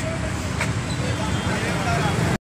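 Steady road traffic noise, a low rumble of passing vehicles, with faint voices near the end.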